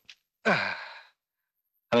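A person's long breathy sigh, falling in pitch, about half a second in, after a short catch of breath.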